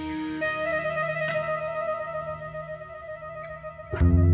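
Slow, quiet rock-song intro: an electric guitar with effects holds long sustained notes over a soft keyboard pad, slowly fading. Right at the end the full band comes in loudly.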